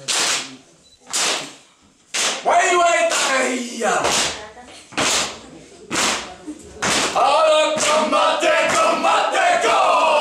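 Group of men performing a haka: sharp slaps and stamps about once a second, with a burst of shouted chant a couple of seconds in. About seven seconds in, the group breaks into loud, sustained chanted shouting.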